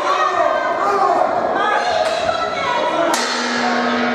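Shouting voices of the crowd and corners echo in a sports hall during an amateur boxing exchange, with thuds of gloved punches. About three seconds in, a sudden sharp strike is followed by a held ringing tone.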